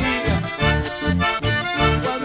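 Live dance band music led by accordion over a steady bass beat.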